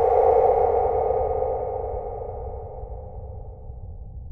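A synthesized horror sound-effect tone: a single ringing note that swells to its loudest at the very start and slowly dies away over about four seconds, over a low rumble.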